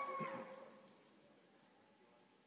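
A drawn-out, steady-pitched vocal sound fading away within about the first half second, then near silence.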